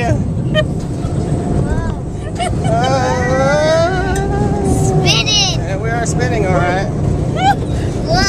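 An adult and a young child laughing and giving drawn-out, gliding cries of delight while spinning on a teacup ride, over a steady low rumble.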